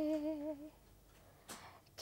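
A woman singing unaccompanied, holding one note with a slight waver that fades out under a second in, then a short intake of breath about a second and a half in before the next phrase.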